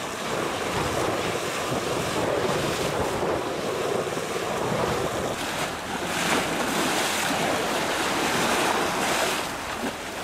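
Choppy flood-high lake waves slapping and splashing against and over a low concrete retaining wall, with wind buffeting the microphone. The splashing surges loudest in the second half.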